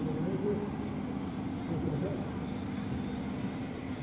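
A boat's engine running with a steady low drone as the boat comes in to the quay, with people's voices talking over it.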